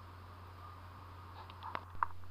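Steel parts of a Sturmey Archer internal gear hub being turned and handled by hand: a few faint metallic clicks about one and a half seconds in, over a low steady hum.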